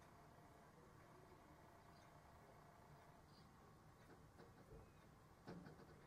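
Near silence: room tone, with a few faint clicks and scrapes near the end as a metal blade crushes pressed eyeshadow in its metal pan.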